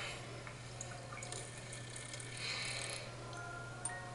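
Faint television soundtrack heard through the room over a steady low hum: a soft hiss and small clicks, then quiet chiming music notes coming in near the end.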